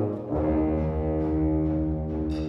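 Concert band playing the opening of an upbeat march: a line of short notes in the low winds gives way, about a third of a second in, to a held low chord over a pulsing bass.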